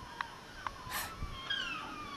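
Faint high, falling calls of an animal, with a few short ticks and a brief hiss about a second in.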